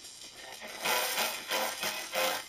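Singing arc from a flyback transformer's high-voltage lead, modulated by audio from a tape: a thin, hissy reproduction of the recording that grows louder about a second in as the arc is drawn out. It sounds weak and distorted, the modulation coming through poorly at this arc length.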